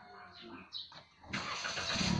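A car engine starts up suddenly about a second and a half in and keeps running.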